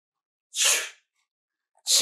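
One short, sharp burst of breath from a man about half a second in, the kind of quick nasal or mouth breath given just before speaking.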